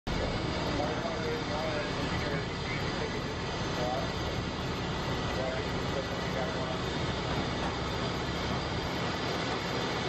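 A steady engine drone runs throughout, with faint voices in the distance.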